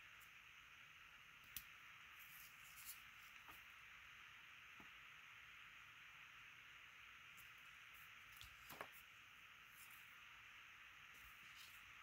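Near silence: faint steady hiss with a few soft ticks as thin glitter tape is pressed down along the edge of a paper card.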